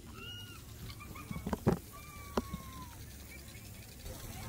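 Faint, high animal calls: a short arched call just after the start and a longer, slightly falling one around the middle. A few sharp knocks come in between, the loudest about one and a half seconds in.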